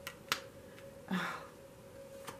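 A tarot card being laid down onto a spread on a cloth-covered table: two crisp clicks in the first third of a second, the second one louder, as the card is snapped into place, then a softer, brief sound just after a second in.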